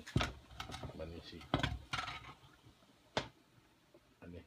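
Three sharp knocks, a little over a second apart, among brief snatches of voice in a small room.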